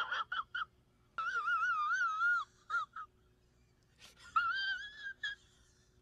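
A high-pitched, wavering whine in drawn-out bursts: a few short squeaks at the start, a long wobbling whine about a second in, two more squeaks near three seconds, and another whine around four and a half seconds.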